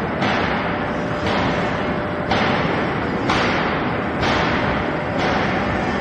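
Wire mesh belt shot blasting machine running on a test run, its blast-wheel motors and conveyor making a dense, steady mechanical din. The noise brightens briefly about once a second.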